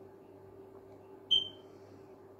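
A single short, high-pitched electronic beep a little over a second in, fading quickly, over a steady low hum.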